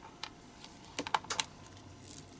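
Small sharp clicks of cast plastic pieces being handled and their excess flash trimmed away, with a quick run of about five clicks about a second in.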